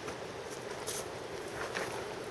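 Faint footsteps of hikers on a rocky dirt trail, a couple of soft steps over a steady outdoor hiss.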